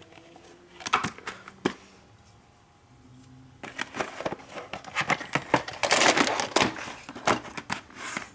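Plastic VHS clamshell cases being handled on a wooden table: a few sharp clicks about a second in, then from about halfway through a long run of rustling and clattering.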